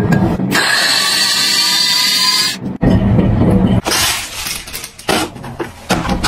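A small electric mini chopper whirring with a steady whine for about two seconds, chopping peeled garlic cloves, over background music.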